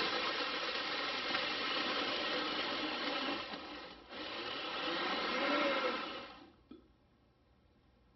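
Countertop blender crushing ice in a cocktail, with a tamper held down in the jar. It runs loud and steady, dips briefly about four seconds in, runs again and stops about six and a half seconds in.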